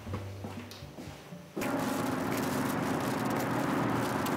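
Faint background music, then about one and a half seconds in a sudden switch to steady outdoor street noise with a low hum.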